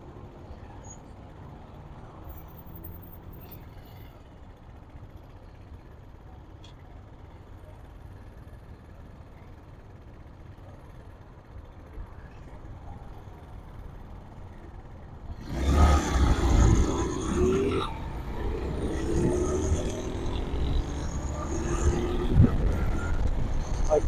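Small motorcycle engine idling quietly while stopped. About 15 seconds in it pulls away, and the engine revs up through the gears in repeated rising pitches over a rush of wind noise.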